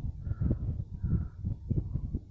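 A bird, crow-like, calls twice about three-quarters of a second apart over a low, uneven rumble.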